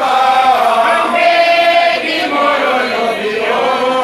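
A group of men singing a chant together in chorus, with long held notes.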